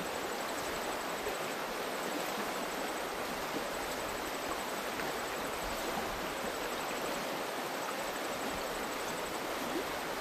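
River water running over a stony bed: a steady, even rush of flowing water.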